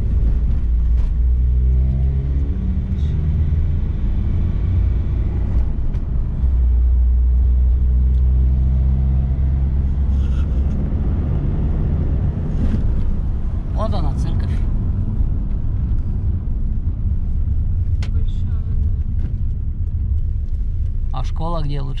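Vehicle engine and road rumble heard from inside the cab while driving, a heavy steady low drone with the engine note rising and falling as the vehicle speeds up and slows. A brief high-pitched sound cuts through about two-thirds of the way in.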